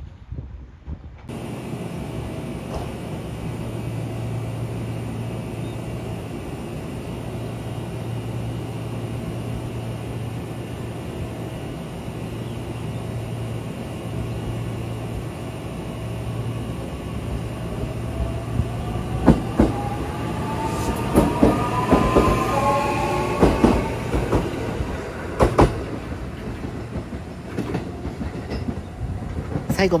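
Electric multiple-unit train running along a station track. Its running noise is steady, then a motor whine rises in pitch over a few seconds while the wheels clack over rail joints. It is loudest in the second half.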